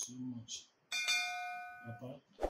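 A bright bell-like notification chime from a YouTube subscribe-button animation. It rings out suddenly about a second in and fades away over the next second. It is preceded by a short click and a brief low murmur of a man's voice.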